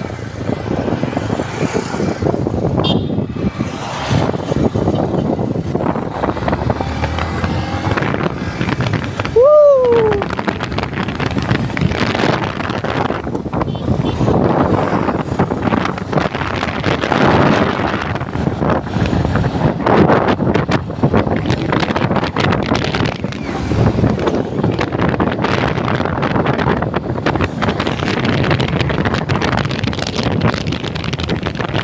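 Wind rushing over the microphone of a moving motorcycle, mixed with its engine and tyre noise at cruising speed. A short falling tone sounds once about ten seconds in.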